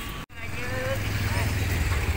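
A 150 cc motorcycle engine idling with a steady low throb, coming in just after a brief cut-out near the start.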